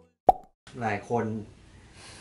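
A single short, sharp pop about a quarter second in, followed by a man speaking.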